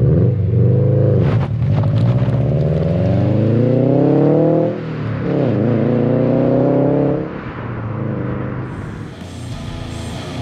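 Subaru WRX STI's turbocharged flat-four accelerating hard away from a standstill. The engine note climbs steadily, drops sharply with a gear change about five seconds in, climbs again, then fades as the car pulls away into the distance.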